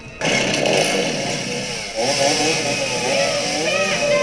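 A chainsaw on a horror film's soundtrack, starting suddenly and running with its engine revving up and down.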